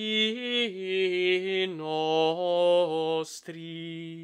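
A solo male voice singing Gregorian chant unaccompanied: a melisma on one vowel, stepping from note to note. A quick breath comes just past three seconds in, then a final held note.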